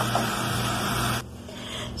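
Diced zucchini sautéing in a pot, a steady sizzling hiss that cuts off suddenly a little over a second in, leaving quieter room tone.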